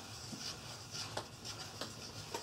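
A brush stirring liquid in a small foam cup: faint rubbing with a few light clicks as it knocks against the cup.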